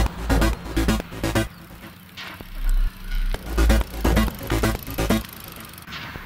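Electronic background music with a pulsing bass beat that drops away briefly in the middle before returning.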